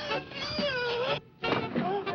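High-pitched, wordless voice sounds that waver and slide in pitch, with a short break a little past a second in.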